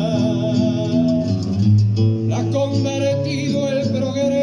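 Acoustic guitar played live in a payador's song, plucked notes over a steady bass line.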